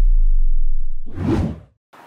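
End of a channel intro sting: a deep bass tone fades out, then a short whoosh sound effect comes about a second in.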